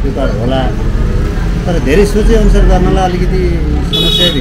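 A man speaking Nepali in an interview, over a low rumble that grows heavier in the second half.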